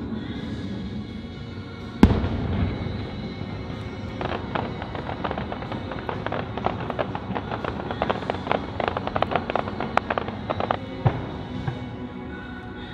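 Fireworks display: one loud boom about two seconds in, then a rapid run of crackling pops from about four seconds that stops shortly before the end, with the show's music playing underneath.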